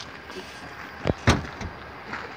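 Two heavy thumps in quick succession about a second in, the second the louder, followed by a lighter knock.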